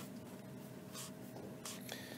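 Faint scratching of a stylus on a drawing tablet, a few short strokes about a second in and near the end, over a faint steady hum.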